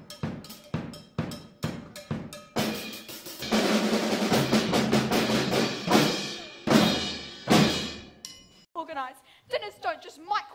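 A drum kit and several snare drums are played together: steady, evenly spaced hits for the first couple of seconds, then a dense, loud drum roll with heavy accents that ends with a few big strokes about eight seconds in. A woman's voice starts near the end.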